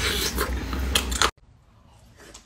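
Close-miked chewing and biting on a sesame-glazed chicken wing, wet mouth sounds with sharp clicks. About a second and a third in it cuts off suddenly, leaving faint eating sounds.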